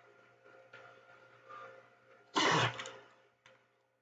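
A person coughs once, sharply, about two and a half seconds in, over a faint steady hum.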